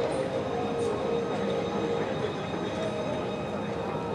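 N700 series Shinkansen train running along an elevated viaduct: a steady rolling rumble with a faint held whine over it.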